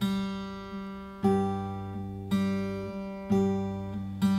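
Zager 900 acoustic guitar fingerpicked over a G chord. A thumb-and-middle-finger pinch on the low and high E strings comes about once a second, and each is followed by a softer single note on the open G string, all left ringing.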